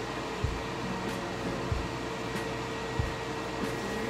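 Steady whirring fan hum with a faint low thump about every second and a quarter.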